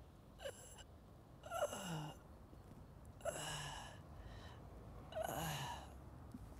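A man retching and heaving over a bowl, deliberately making himself vomit: a short heave, then three louder gasping retches about two seconds apart, each with a voice that slides down in pitch.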